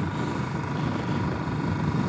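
Royal Enfield Classic single-cylinder motorcycle engine running steadily at cruising speed, with rushing wind on a helmet-mounted microphone.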